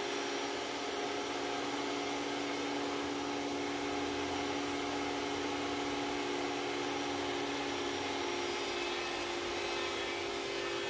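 Benchtop thickness planer running steadily with a constant motor whine as a wooden board feeds through its cutterhead.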